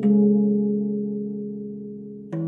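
Meinl Sonic Energy 16-inch steel tongue drum (Amara, tuned in D): one note struck once, ringing on and slowly fading.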